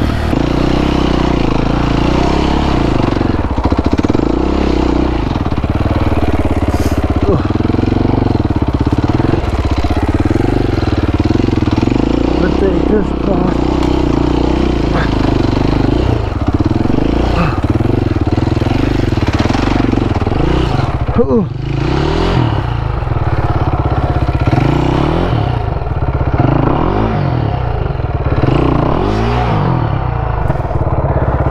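Enduro dirt bike engine being ridden off-road, its pitch rising and falling again and again as the throttle is opened and closed on a wooded trail. About two-thirds of the way through the revs drop briefly before picking up again.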